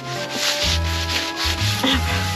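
Dry grass and brush rustling and scraping right against the phone's microphone as a hand grabs at it, a continuous rough rubbing noise. Background music with steady held bass notes plays underneath.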